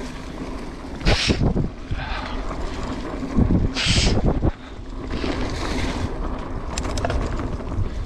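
Mountain bike riding down a dirt singletrack, heard from a camera on the rider: a steady rumble of tyres and wind on the microphone. About a second in, and again at about four seconds, there are louder jolts with a short hiss of tyres over the trail, and a few light clicks come near the end.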